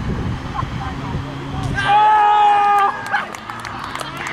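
One long, loud shout of a cheer lasting about a second as a goal goes in, followed by scattered claps.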